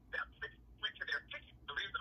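Faint speech heard through a phone on speakerphone: a thin, narrow-sounding voice in short broken fragments, like a caller talking on the line.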